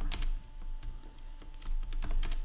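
Computer keyboard being typed on: a scattering of separate key clicks, several more coming close together near the end.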